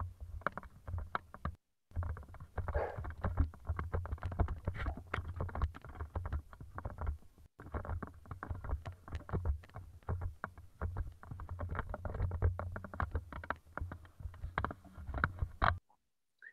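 Soundtrack of first-person helmet-camera footage of a rifle exercise, played back over a video call: a dense, irregular run of knocks and clatter, several a second, thin and muffled, with two brief dropouts.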